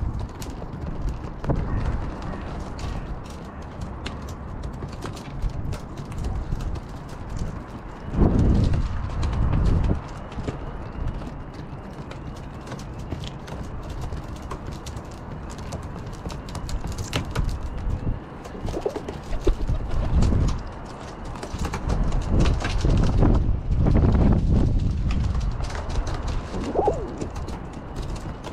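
Rock pigeons pecking mixed seed from a plastic tray, their beaks clicking rapidly and unevenly against the seed and tray, with an occasional coo. Gusts of wind buffet the microphone loudly about eight seconds in, around twenty seconds, and for several seconds near the end.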